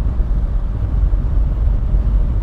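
Kawasaki KLR650 motorcycle riding at street speed: a steady, loud low rumble of wind on the microphone with the engine and road noise underneath.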